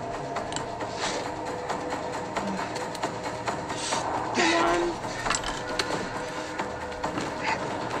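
Background music: a steady score of held low tones, with a few small clicks and rustles and one brief voice about four and a half seconds in.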